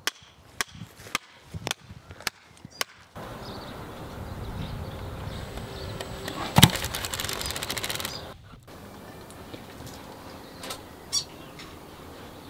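A hammer drives wooden marking-out pegs into the ground with about two blows a second for the first three seconds. Then wind blows on the microphone, with one loud knock a little past halfway.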